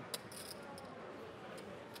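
Poker chips clicking together a few times as stacks are pushed in, over low room noise.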